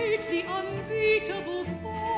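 Female operatic soprano singing with vibrato, accompanied by an orchestra.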